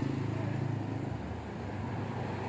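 A low, steady engine hum that fades away a little over a second in, over faint outdoor background noise.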